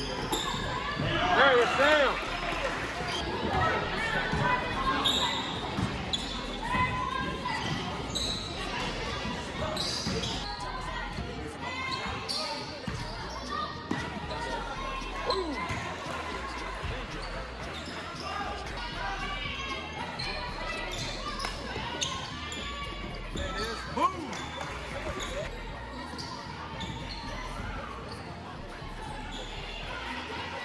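Basketball game in a gym: a ball bouncing on the hardwood court under a steady din of spectators' and players' voices, echoing in the large hall. A louder burst of shouting rises a second or two in, and one sudden loud sound stands out late on.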